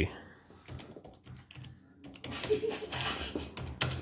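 Typing on a computer keyboard: a run of quick, uneven key clicks.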